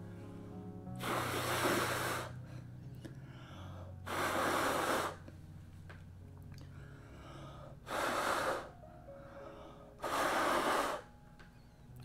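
A person blowing hard through the lips onto wet acrylic paint to push it across the canvas: four long blows, each about a second, roughly three seconds apart.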